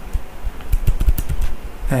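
Typing on a computer keyboard: a quick run of separate key clicks, thickest about a second in.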